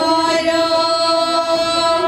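Kashmiri Pandit women singing wanwun, the traditional wedding song, holding one long steady note that stops right at the end.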